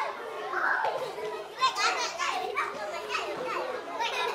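A group of young children playing and chattering at once, their high voices calling out and overlapping.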